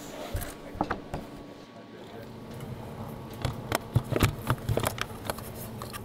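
Scattered clicks, knocks and rustling from handling in and around a Formula 1 car's cockpit as a driver settles in for a seat fit, growing busier in the second half, with faint voices behind.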